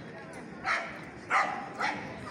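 A dog barking three times in quick succession: short, sharp barks, the second the loudest, over the murmur of a street crowd.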